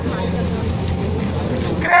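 Steady low outdoor rumble with faint crowd noise over it, in a pause between amplified announcements.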